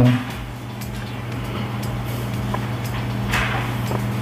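Steady low held tones from background music, over a haze of ambient noise, with a brief swish about three and a half seconds in.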